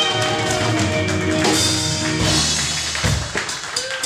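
Live rock band playing, with drum kit, electric guitar and keyboards: held notes at first, then steady drum strokes.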